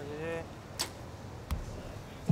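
A compound bow shot: a sharp snap as the string is released a little under a second in, then a knock with a dull thud as the arrow strikes the target about two-thirds of a second later.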